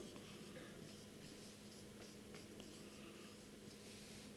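Faint scratching of a felt-tip marker writing on flip-chart paper, over a low steady hum.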